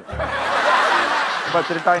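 A group of people laughing together. It starts suddenly and fades out just before speech resumes near the end.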